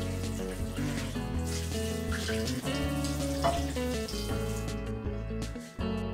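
Kitchen faucet running a stream of water into a cast iron skillet held in a stainless steel sink, cutting off about three-quarters of the way through. Background music plays throughout.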